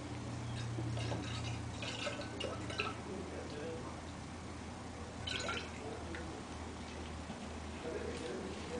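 Cooking oil poured from a plastic jug into a glass Erlenmeyer flask, with bursts of liquid pouring noise from about half a second to three seconds in and again around five seconds, over a steady low hum.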